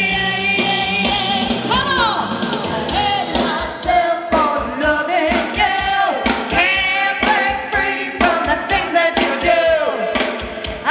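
Live band playing: singing over electric guitar, bass guitar and drums, with a steady beat.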